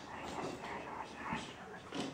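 Quiet, indistinct human voices, too faint for the words to be made out.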